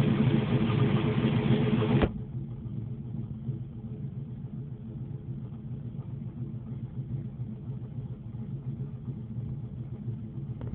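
Classic car's engine running steadily. It is loud at first, then about two seconds in it drops suddenly to a much quieter, steady running sound that carries on.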